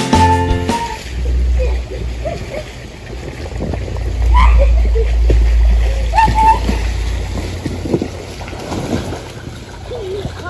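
Background music ends about a second in, then water splashing and lapping in a swimming pool. A low rumble swells through the middle.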